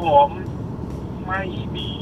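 Steady low rumble of road and engine noise inside a moving car's cabin, under a man talking.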